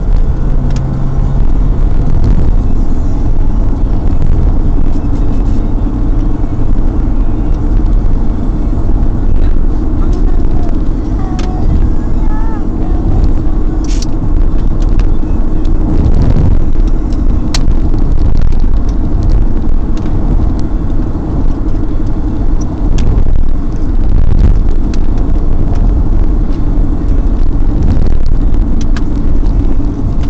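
Car driving along a road, heard from inside the cabin: a steady, loud rumble of engine and tyre noise, with a couple of sharp clicks midway.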